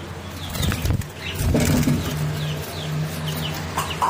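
Small aviary parrots chirping, short falling chirps repeating every few tenths of a second, with a burst of rustling and wing flapping about a second in.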